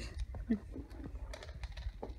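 Light scattered clicks and taps as a rubber pet-food mat is pulled across a hard floor strewn with dry dog kibble, with a brief low vocal sound about half a second in.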